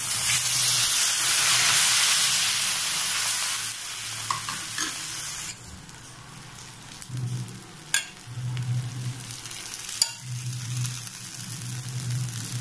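Rava dosa batter hitting a very hot dosa griddle. A loud sizzle that dies down in steps after about four seconds to a quieter, steady sizzle, with a couple of faint ticks later on.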